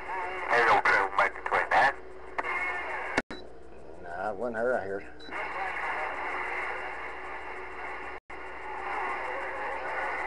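Garbled, warbling voices of distant stations coming through a Galaxy CB radio's speaker, fading in and out over a steady hiss of band static. The signal cuts out completely for an instant twice.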